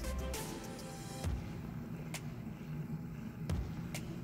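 Soft background music with a few faint ticks.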